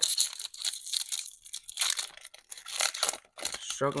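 Foil-lined wrapper of a 2024 Topps Series 1 hobby pack being torn open by hand: a run of irregular crackling rips and crinkles that stops about three and a half seconds in.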